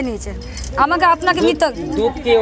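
A woman speaking in an on-the-street interview, with a faint metallic jingle underneath.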